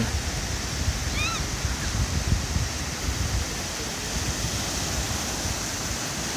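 Surf breaking and washing up a sand beach: a steady rushing noise with a low rumble. A short distant voice calls out about a second in.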